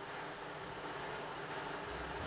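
Steady low background noise with no distinct events: the room tone of a broadcast hall.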